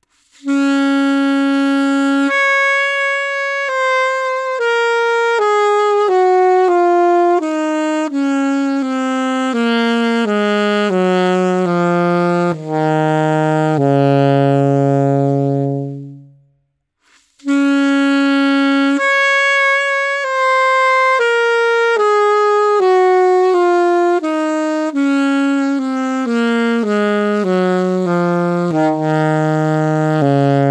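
Yamaha alto saxophone played solo: the same phrase twice, on one horn and then the next. Each phrase is a long held note, a leap up an octave, then a descending run of notes ending on a long low note, with a short break between the two takes.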